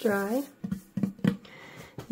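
A woman's short vocal sound, then a few soft taps as her hands press down on the smooth painting panel.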